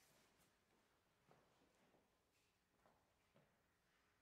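Near silence, with a few faint, soft knocks as the inside of a grand piano is handled.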